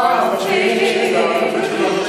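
Several voices singing together a cappella, holding notes without any instrumental accompaniment.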